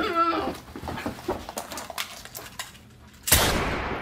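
A strained, bleating cry from a person's voice at the start, a few small knocks, then a single loud handgun shot a little over three seconds in that fades away slowly.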